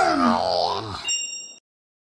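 A cartoon wail sliding down in pitch and fading, with a brief high ringing chime just after a second in; the sound cuts off suddenly about three quarters of the way through.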